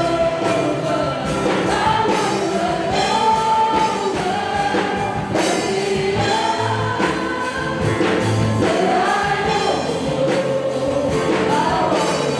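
Live gospel worship song: several singers on microphones, a woman's voice leading, over band accompaniment with a steady beat.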